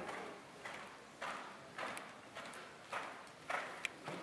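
Horse cantering on soft arena sand: faint, muffled hoofbeats in a regular rhythm, about one stride every half second or so.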